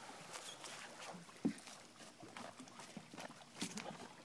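Faint water sounds of a Labrador retriever swimming and paddling, with a few small clicks, the sharpest about a second and a half in and a couple more near the end.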